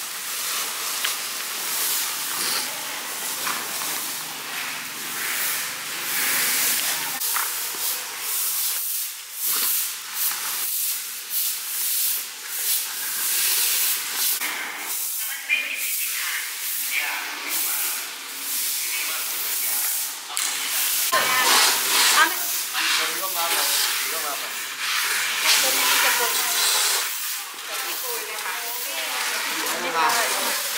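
Dry chopped plant litter rustling and crackling as it is handled and stuffed into woven sacks, and stiff brooms sweeping it across a concrete floor, in irregular scratchy strokes.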